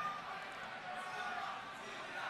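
Low, steady background noise of a large hall with a public-address system, with a brief fading echo of a man's voice at the start.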